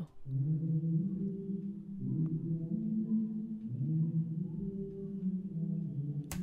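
Soloed vocal reverb return, filtered so only its low end remains: a muffled, boomy wash of held vocal notes that changes pitch every second or two. This is the muddy low-frequency build-up a reverb adds, which is normally cut with an EQ.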